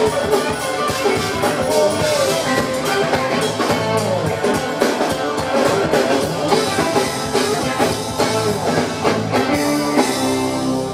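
Live funk band playing an instrumental passage: trumpet and saxophones over electric guitars, keyboards and drum kit, with a steady driving beat.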